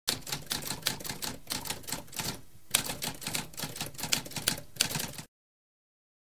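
Typewriter sound effect: a fast run of key strikes, with a brief pause about halfway, stopping abruptly a little past five seconds in.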